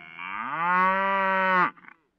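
A cow's moo: one long call that rises in pitch at the start, holds steady, and cuts off sharply near the end.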